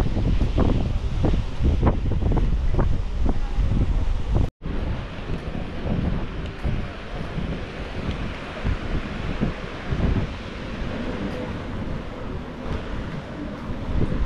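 Wind buffeting the action camera's microphone, heavy and gusty at first, over the wash of small waves on the beach. The sound drops out for an instant about four and a half seconds in, and the wind is lighter after that.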